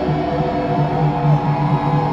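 Electric bass played live through a concert sound system, a low riff repeating in short pulses, with a held synth pad over it.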